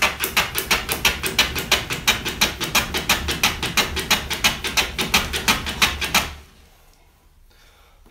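Low-angle hand plane fitted with a 25° blade, run on its side along a shooting board and slicing the end grain of a hardwood strip. Quick, even strokes, about four or five a second, stop about six seconds in.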